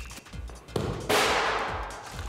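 A heater being hit in a stability test: a sudden strike about a second in, followed by a rushing noise that fades over the next second. The heater stays upright but is shoved along.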